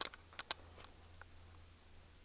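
A few light, sharp clicks within the first half second, then only a faint low hum.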